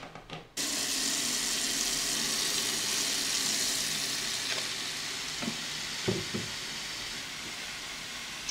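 Kitchen tap turned on about half a second in, then running steadily into a plastic tub in the sink, the stream splashing into the water as it foams up with washing-up liquid. A few soft knocks come near the middle.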